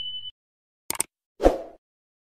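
A steady high electronic beep that cuts off shortly after the start, then a quick sharp double click about a second in, and a short low plop half a second after that.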